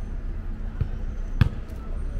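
Steady low city-street rumble with two dull thumps, the louder one about one and a half seconds in.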